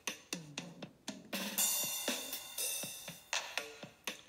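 Electronic drum loop from the DigiStix drum app: kick drums with falling pitch, snare and hi-hat or cymbal hits playing a programmed beat.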